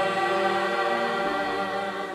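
Mixed choir of men and women singing together, holding long sustained chords.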